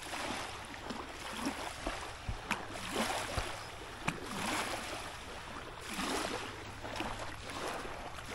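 Small lake waves lapping and washing onto a sandy shoreline, rising and falling every second or two, with two sharp clicks partway through.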